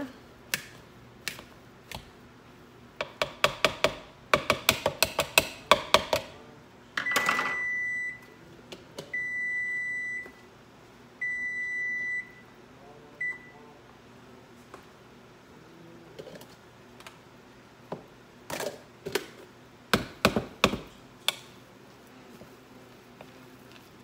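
Microwave oven beeping three times, about a second each, then a short blip, signalling the end of its cooking cycle. Before and after the beeps come runs of quick knocks and clatter from potatoes being mashed and stirred in a bowl.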